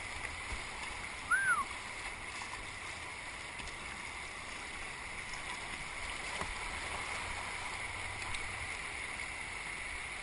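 Patapsco River running high in flood: a steady rush of fast-moving water around a kayak. A short high-pitched rising-and-falling sound stands out about a second and a half in.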